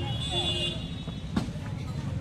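A vehicle engine running steadily at low revs, with faint voices behind it and a single sharp click about halfway through.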